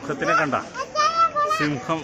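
High-pitched children's voices talking and calling out.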